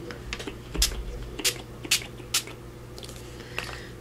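Small pump spray bottle of pink mixed-media ink spritzed onto paper in about six quick, short bursts over the first two and a half seconds.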